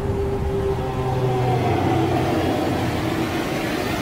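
Film trailer soundtrack: low sustained droning tones with a deep rumble. The tones shift and sag slightly in pitch around the middle.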